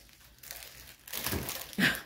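Clear plastic film on a diamond painting canvas crinkling as the canvas is handled and pressed flat. The sound starts about halfway through, after a near-quiet moment, and grows louder toward the end.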